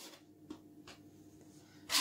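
Plastic draughts pieces being slid and set down on a wooden draughts board, giving a few light clicks and a sharper click near the end.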